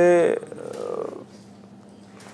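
A man's voice drawing out the end of a word, which trails off into breath noise.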